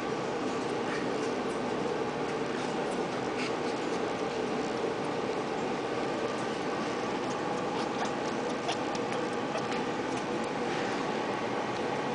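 Congo African grey parrot making soft, irregular clicking noises with its beak close to the microphone, over a steady background hum.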